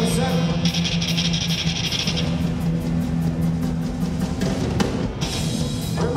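Live rock band playing an instrumental passage: a drum kit keeps a steady beat with even cymbal strokes over a sustained bass line and electric guitars.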